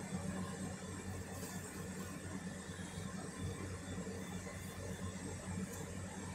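A steady low machine hum, with a couple of faint brief swishes.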